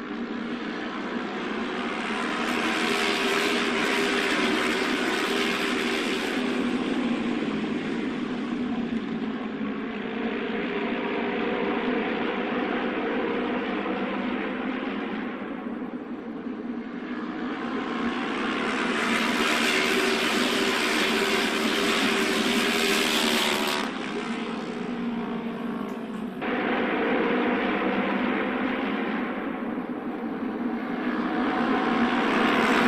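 Auto race motorcycles running laps on the track during a trial run, their engines swelling loud twice as the pack comes past and fading in between, with abrupt jumps in the sound near the end.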